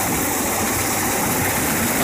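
Engine-driven rice thresher running steadily while rice stalks are fed into its drum: a constant engine hum under an even hiss of threshing.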